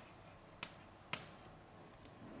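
Chalk knocking against a blackboard during writing: three short, sharp clicks about half a second apart, over faint room hiss.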